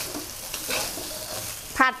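A spatula scraping and tossing fried rice around a metal wok, with a light sizzle of frying. A woman starts speaking near the end.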